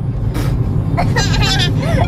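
Steady low road and engine rumble inside the cabin of a moving Chevrolet car, with a short burst of a high-pitched voice about halfway through.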